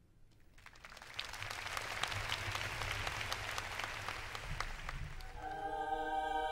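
Concert audience applauding: the clapping swells over the first couple of seconds, holds, and dies away about five seconds in. Near the end a sustained chord from the orchestra and choir begins.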